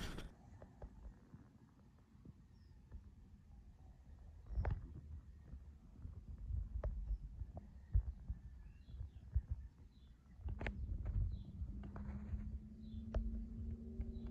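Quiet background with irregular low thumps and knocks and a few short, faint high chirps; a low steady hum comes in a little past halfway.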